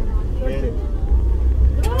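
Steady low rumble of a car driving on a mountain road, heard from inside the cabin, with a voice briefly about half a second in and again near the end.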